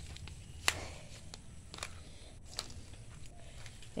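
Low rumble of a handheld phone being moved about, with a few soft clicks; the sharpest comes a little under a second in.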